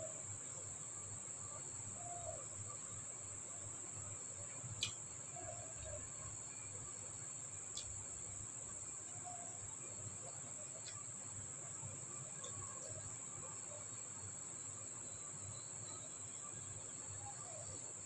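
Quiet eating by hand: faint chewing and mouth sounds, with a few soft clicks, the clearest about five seconds in, over a steady high-pitched whine.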